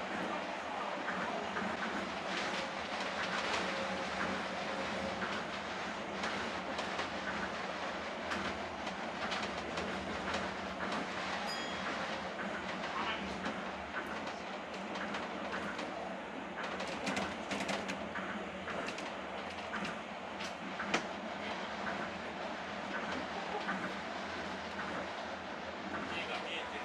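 A moving train heard from inside the carriage: a steady running rumble and hiss, with a run of sharp clicks and one louder knock in the later part.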